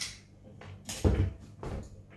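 Handling noise from an electric guitar through its amp: two short muted knocks and string scrapes, one about a second in and a smaller one near the end, over a faint steady amp hum, with no notes played.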